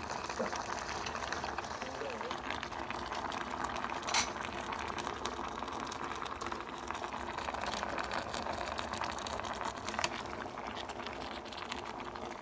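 Broth bubbling at a steady boil in a divided stainless steel electric hot pot. Two sharp clicks stand out, one about four seconds in and one near ten seconds.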